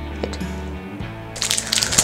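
Wrapped milk chocolate bars being bent and snapped in their wrappers, with crackly wrapper crinkling starting about one and a half seconds in, over steady background music.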